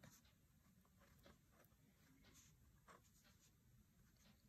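Very faint scratching of a pen writing on paper in short separate strokes.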